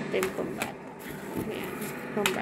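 Small cardboard crayon boxes being handled in a cardboard carton: a few light taps and rustles of packaging.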